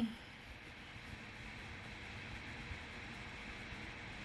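A short "hmm" and a laugh, then a faint, steady hiss of background noise that grows slightly louder.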